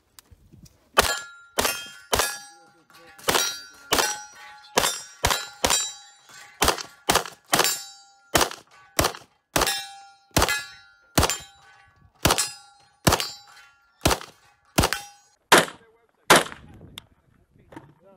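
A rapid string of about two dozen pistol shots, two to three a second, most of them followed by the metallic ring of steel targets being hit.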